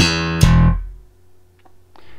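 Slap bass on a four-string electric jazz bass: two notes about half a second apart, the second a slapped open E string, ringing out and fading within about a second.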